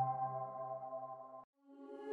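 Intro music: a held chord of several steady tones fading away, cut off about one and a half seconds in. After a brief gap, soft new music fades in near the end.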